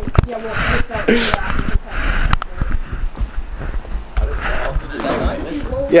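People laughing and voices too indistinct to make out, over low thumps and rustling throughout.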